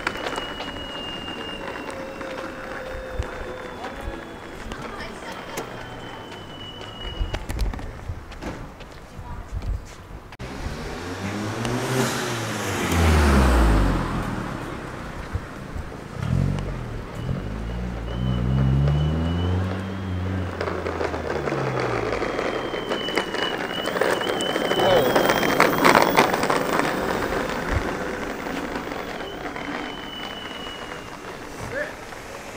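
Cars driving past at low speed, their engines swelling and fading, loudest about twelve seconds in and again around eighteen seconds, over steady outdoor traffic noise.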